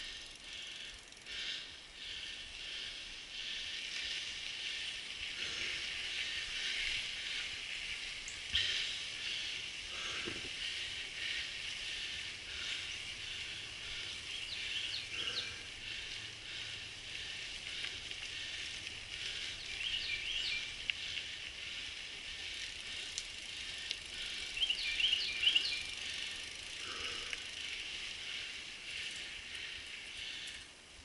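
Mountain bike rolling along a dirt singletrack trail: tyre and chassis rattle over a steady high hiss, with a few short runs of rapid high clicks and an occasional thump.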